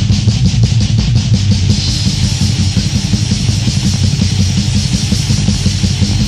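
Heavy metal demo recording: distorted electric guitars and bass playing with drums, with fast, even drum and cymbal strikes near the start.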